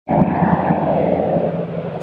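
Four-engine turboprop aircraft of the C-130 Hercules type flying overhead: a steady drone of engines and propellers with a low hum running through it, easing slightly toward the end.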